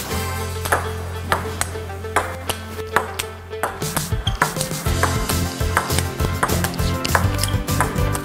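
Table tennis rally: the ball clicking off the table and off an ice-scraper brush and a Christmas star ornament used as bats, sharp clicks about every half second. Background music runs underneath, its steady bass turning into a pulsing beat about four seconds in.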